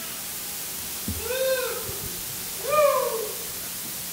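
Two short, high voice-like calls about a second and a half apart, each rising and then falling in pitch, over a steady hiss from the sound system.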